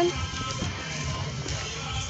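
Music playing.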